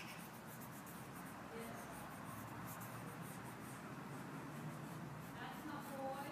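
Coloured pencil scribbling on paper as a picture is coloured in: a faint, rapid run of light scratchy strokes.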